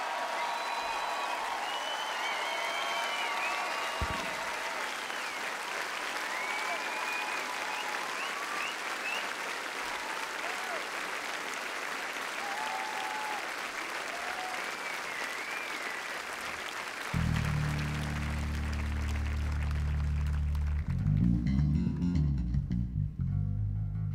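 Large crowd applauding and cheering. About seventeen seconds in, a Fender Jazz-style electric bass guitar comes in with low held notes, breaking into a quicker bass line near the end.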